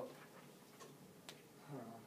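Near-quiet room tone broken by two faint single clicks, a soft one just under a second in and a sharper one about a second and a quarter in.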